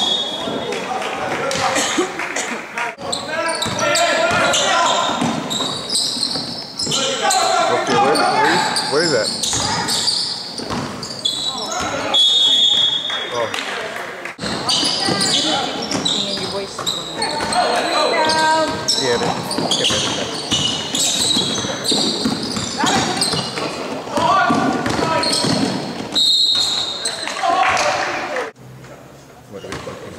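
A basketball game in a large gym, with voices shouting across the court and a basketball bouncing on the hardwood floor. Three short, high squeaks come through, one at the start, one about twelve seconds in and one about twenty-six seconds in, all echoing in the hall.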